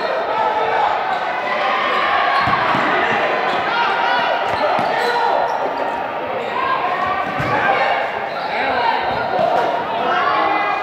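Sounds of a basketball game in a large indoor gym: voices calling out across the court, with a few sharp thuds of the ball on the floor.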